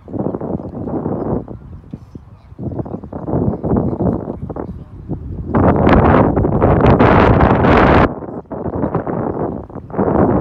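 Wind buffeting the microphone in gusts, loudest for about two and a half seconds past the middle.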